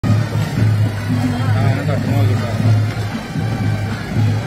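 Voices over music with a low beat pulsing about twice a second.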